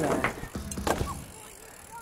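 BMX bike rolling down a skate-park ramp and coasting away: a rush of tyre noise at first, then a few light clicks and rattles from the bike that fade out.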